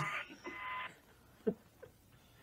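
Phone spirit-box app playing static: a low hiss with a steady tone through it that cuts off about a second in, followed by two faint short sounds.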